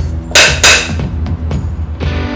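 Two sharp wooden clacks of a film clapperboard being snapped shut, about a third of a second apart, over background music.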